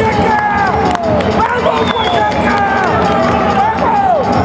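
Shouted calls from people in an audience, several separate voices whose pitch slides downward, over music playing underneath.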